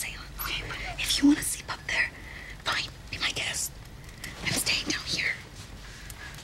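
Hushed whispering voices in short breathy phrases, with no full voice.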